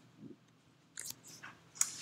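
A few faint, short clicks in a pause between speech: a soft blip near the start, then three or four quick ticks in the second half, the last just before speech resumes.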